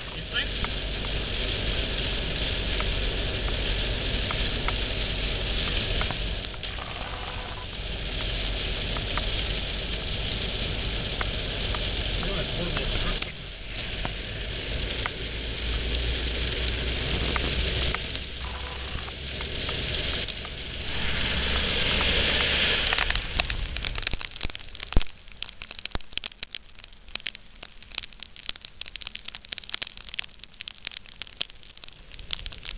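Torrential rain hammering on the roof and windscreen of a moving car: a loud, dense hiss with road and engine rumble beneath. About 24 s in it thins and drops in level to scattered crackling drop impacts.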